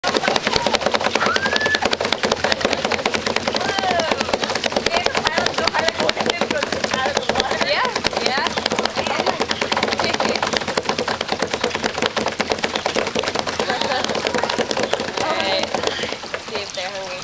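A mass of koi crowding and splashing at the water's surface: a dense, rapid crackle of small splashes, with voices in the background.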